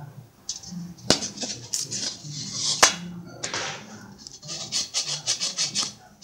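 Antique perforated brass sieve handled on a table: its metal rim rubs and scrapes on the surface, with two sharp knocks about a second in and near three seconds, and a run of quick scrapes near the end as it is set down upside down.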